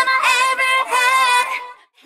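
Excerpt of a K-pop girl-group song: female vocals sing held, wavering notes over a light backing track, then fade out to a short silent gap near the end.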